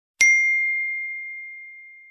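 A single bell 'ding' sound effect, struck once with a clear high tone that fades slowly over about two seconds. It marks the click on the notification bell in a subscribe-button animation.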